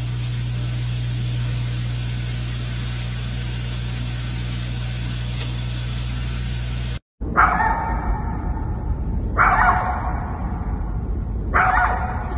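A steady low hum with hiss for the first seven seconds or so. Then, after a sudden break, a small dog gives three loud, drawn-out cries, each about a second long.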